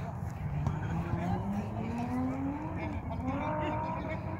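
A vehicle engine accelerating, its pitch rising steadily for about two seconds through the middle, over a steady low rumble, with voices in the background.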